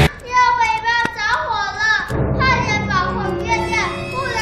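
A child's high voice, in long, wavering, drawn-out sounds without clear words, in two stretches with a short break about two seconds in. Low background music comes in under the second stretch.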